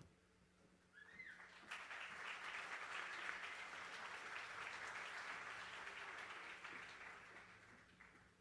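Faint audience applause that starts about a second in, swells, then fades away near the end.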